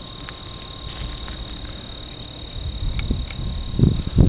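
Steady high-pitched chorus of crickets singing, with low wind rumble on the microphone building near the end.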